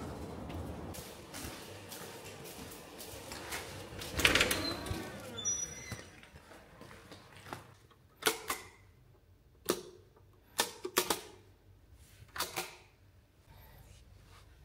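Steady background noise with a louder clatter about four seconds in. The second half is quieter and holds several sharp, separate clicks and knocks.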